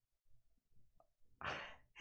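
Near silence, then about one and a half seconds in a woman lets out a short, breathy sigh.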